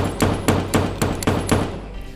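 A rapid string of gunshots echoing in a building corridor, about four a second, some eight shots opening with a sharp first report.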